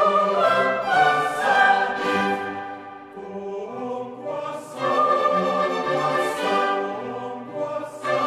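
Mixed choir and orchestra performing pre-classical sacred choral music. A full entry comes right at the start, it softens in the middle, and the full choir and orchestra come in again about five seconds in.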